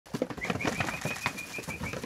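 Goats' hooves clattering and knocking on a wooden trailer floor and ramp as the goats jump out, in an irregular run of sharp knocks. Over it comes a rapid series of short high chirping notes, about seven a second, from about half a second in until near the end.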